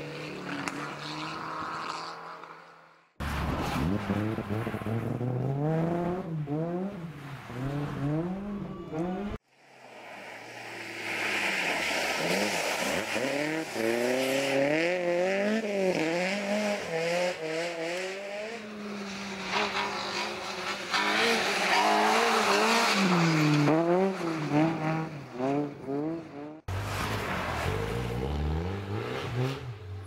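Rally car engines revving hard on a snow-covered stage, their pitch rising and dropping again and again through gear changes as several cars go by in turn. The sound cuts off abruptly between cars three times.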